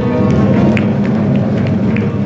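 Live jazz band playing: sustained low notes with a light, steady ticking beat, about three ticks a second, coming in just under a second in.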